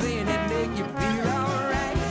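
Upbeat New Orleans-style jazz band music with brass, including trombone.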